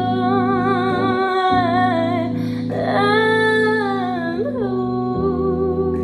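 Female voice humming a wordless melody with vibrato over an instrumental backing of held chords, which change about a second and a half in and again near the end. There is a short breath in the middle.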